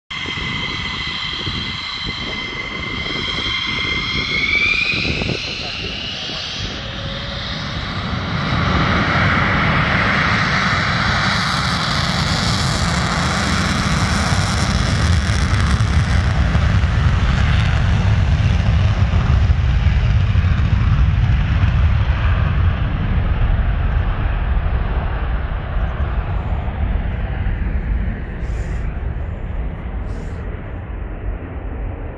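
F-15E Strike Eagle's twin turbofan engines on the takeoff roll: a high turbine whine rising in pitch over the first few seconds, then a loud jet roar that builds from about eight seconds in, is fullest in the middle, and slowly fades.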